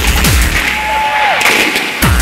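Techno track in a breakdown: the kick drum drops out about a quarter of the way in and the deep bass cuts off about halfway. A high synth tone holds and then slides down near the end.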